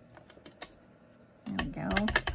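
Light clicks of a clear acrylic stamping block being handled on paper, then from about one and a half seconds in a quick run of taps as the stamp is dabbed onto an ink pad to ink it.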